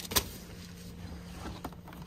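A sharp clunk as food containers are handled and dropped into a cloth bag, followed by a couple of faint clicks. A steady low hum runs underneath.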